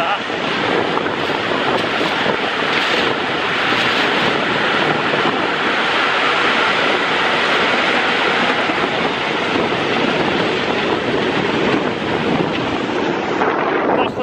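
Aquatic weed-harvester boat's engine running steadily as its front conveyor lifts and tips a load of cut waterweed onto the bank.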